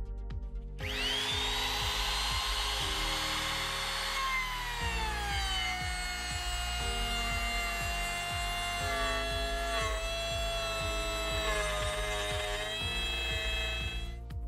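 Bosch GKF 600 trim router motor starting about a second in with a whine that rises as it spins up. The pitch then drops somewhat and holds steady as the bit cuts a groove along a softwood block. Background music with a steady beat plays throughout.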